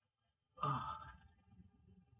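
A man sighs once, about half a second in: a voiced out-breath that drops in pitch and fades over about half a second.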